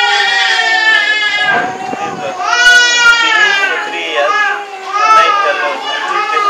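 Infant crying in a series of long wails, each a second or two long, rising and falling in pitch, with short breaks for breath between them.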